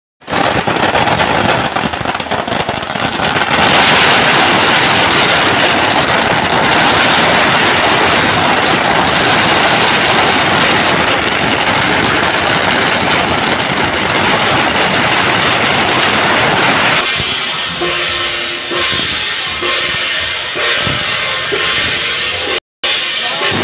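A long string of firecrackers exploding in one continuous, very rapid crackle. It stops about three-quarters of the way in, leaving quieter sounds with a few held tones.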